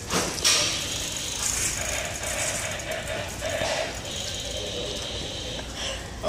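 Bicycle being test-ridden, its rear freewheel ticking and its parts rattling, with a sharp click near the start.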